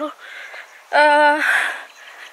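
A woman's voice: a drawn-out, level-pitched 'uhh' about a second in, lasting about half a second and trailing off into a breathy exhale.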